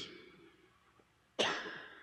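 A man coughing once, sharply, about one and a half seconds in.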